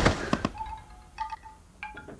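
Sparse chime notes: a couple of sharp clicks near the start, then three small clusters of high, ringing tones spaced a little over half a second apart, each fading away.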